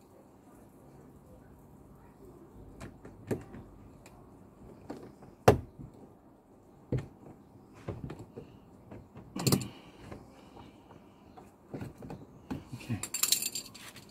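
Hand tools and small screws clinking and tapping against each other and the door trim as a screwdriver is worked: scattered single clicks and knocks, the loudest about five and a half seconds in, and a short run of metallic jingling near the end.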